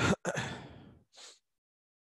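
A man's breath close to the microphone: a short sharp breath, then a longer sigh that fades away within about a second, followed by a brief soft hiss of breath.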